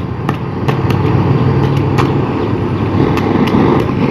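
Handheld gas blowtorch burning steadily as it preheats aluminium being stick-welded, with scattered sharp crackles.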